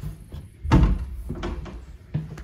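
An interior wooden door being pushed open, with a dull thump about three-quarters of a second in and lighter knocks after it.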